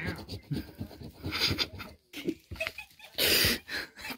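A man's breathy, stifled laughter in short irregular bursts, the loudest a wheezy exhale about three seconds in.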